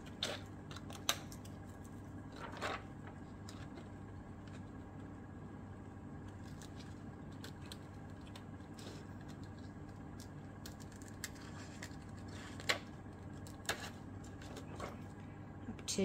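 Scissors snipping a printed bee sticker sheet a few times, with the sheet crinkling as it is handled, over a steady low hum.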